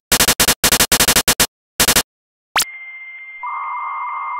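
Retro home-computer sound effects: clusters of rapid clattering clicks like keys being typed, then after a short gap a click and a steady high electronic beep with hiss, joined about three seconds in by a lower, louder tone, like a computer's data-loading signal.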